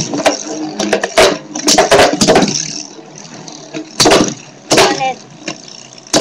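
Two Beyblade Metal Fusion spinning tops whirring in a plastic stadium, clacking sharply against each other and the stadium wall again and again, the knocks coming in irregular clusters.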